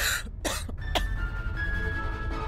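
A man coughing three times in quick succession, about half a second apart, over sustained background music.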